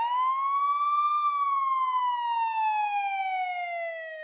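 Police siren sound effect: one long wail whose pitch climbs over about the first second, then slowly falls.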